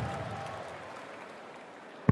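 Arena crowd noise and applause dying away steadily, just after a sharp knock at the very start as a dart lands in the board.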